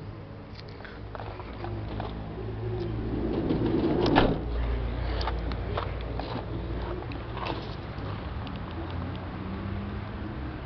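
Handheld camera handling noise with scattered clicks and footstep-like knocks over a steady low hum; the loudest rustle comes about four seconds in.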